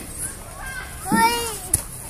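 A young child's voice calls out once about a second in, rising then falling in pitch, followed at once by a single sharp knock, with children playing in the background.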